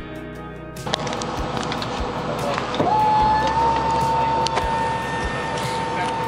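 Brief guitar-style music gives way, about a second in, to the noise of a jet airliner heard from inside the cabin: a steady rush, with a whine that rises about three seconds in and then holds at one high pitch as an engine spools up.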